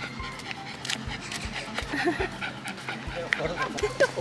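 A small dog panting as it trots along on a leash, with walking footsteps on paving thudding about twice a second.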